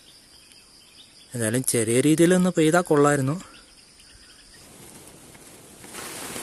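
Faint steady high-pitched insect drone behind a man speaking briefly in the middle. The drone fades out about four and a half seconds in, and a soft even hiss grows toward the end.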